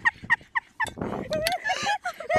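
High-pitched, rapid giggling laughter, a quick run of short yelping 'hee-hee' pulses, about five or six a second, broken by a breathy gasp in the middle.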